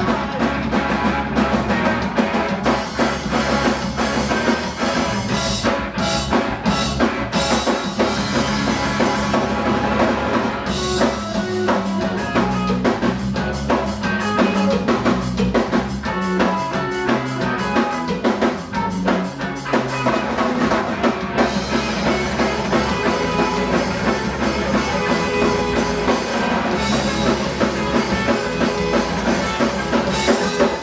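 Punk rock band playing live, loud throughout, with the drum kit prominent over the guitars. Through the middle the playing turns choppy, with clipped stop-start hits.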